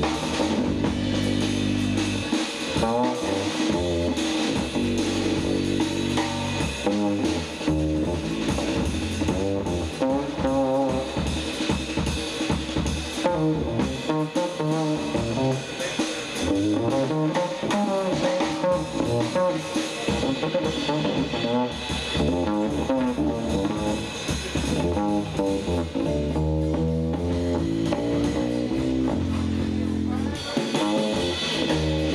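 Live jazz trio playing a jazz standard: guitar lines over a walking upright bass and a drum kit.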